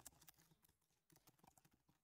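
Near silence with a few faint computer-keyboard keystrokes.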